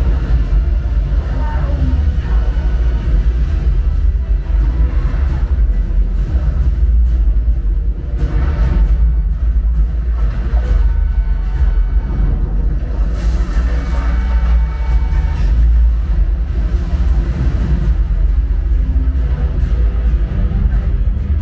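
Film soundtrack played loud through a Sonos Arc soundbar and Sonos Sub, recorded in the room: music over a heavy, steady deep-bass rumble, with some dialogue.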